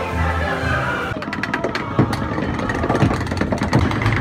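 Choir-style ride music in the first second, then a rapid run of clacks with a few louder knocks: a log flume boat's lift chain and anti-rollback ratchet as the log climbs the lift hill.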